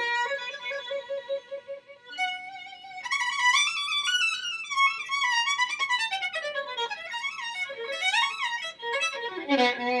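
Unaccompanied solo violin, a 2010 Anthony Lane violin with spruce top and maple back, played with the bow: a few held notes with vibrato, then a fast passage of notes running up and down, landing on a low note near the end.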